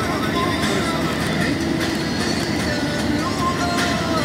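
Steady rumble of road and engine noise inside a moving vehicle at highway speed, with faint voices over it.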